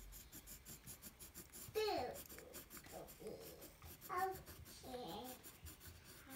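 Pencil scratching on paper in quick short strokes as a child writes and colours in a workbook. A few brief, wordless murmurs from the child's voice come in between.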